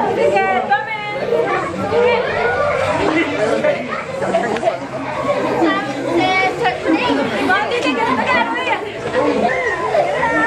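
A group of children and adults chattering and laughing over one another, many voices overlapping with no single speaker.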